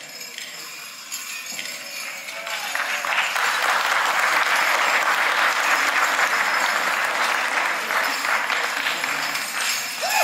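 Audience applauding, building up about three seconds in and then holding steady.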